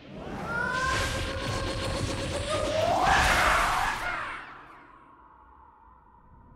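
A whooshing sound effect that swells with gliding tones, loudest about three seconds in, then dies away by about five seconds, leaving a faint held tone.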